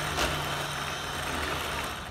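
3D-printed plastic model of a Chevy LS3 V8 turned over by its small electric motor, a steady mechanical whir with a low hum as the crank, pistons and valves cycle. It runs evenly, the sign that the cam timing is now set right.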